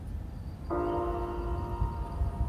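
Low wind rumble on the microphone. About two-thirds of a second in, background music enters with a sustained, bell-like chord that holds steady.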